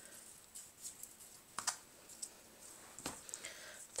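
Faint rustling and a few small clicks of hands handling and knotting paper and crochet trim around a bundle of cinnamon sticks. The two sharpest clicks come about a second and a half in and about three seconds in.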